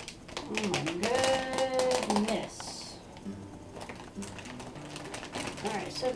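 Thin plastic fish bag crinkling and rustling in the hands, with many small crackles. A person's wordless voice is held for about a second and a half near the start.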